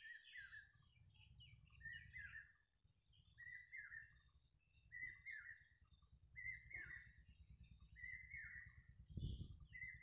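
Faint bird chirping: a short call repeats about once a second, with higher twittering notes in between, over a low steady hum. A soft low thump comes near the end.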